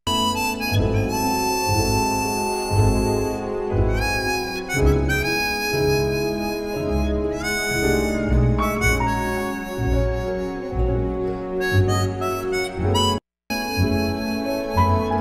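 Harmonica playing a slow, expressive melody live over electric keyboard chords and bass notes. The audio drops out for a split second near the end.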